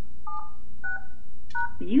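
Three touch-tone keypad beeps from a Polycom desk phone, about half a second apart, each a pair of tones; the last comes with a key click. They are the end of a voicemail password being keyed in, followed by the pound key. The voicemail system's recorded voice starts just before the end.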